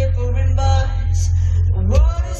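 Loud live band music heard from among the audience: heavy, booming bass and guitar, with a woman's voice singing over it.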